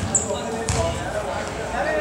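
A basketball bouncing on a wooden gym floor: two thuds about 0.7 s apart, with voices chattering in the background.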